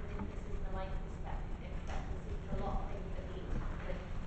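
Speech, with a steady low rumble underneath.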